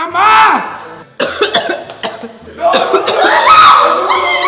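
A man crying out and coughing with his mouth burning from the One Chip Challenge chip: a rising-then-falling cry at the start, coughs about a second in, and more strained cries near the end.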